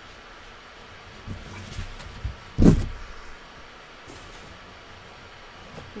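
Handling noise as a watercolour painting board is picked up and tilted: low rubbing rumbles, then one loud knock about two and a half seconds in, over a steady room hiss.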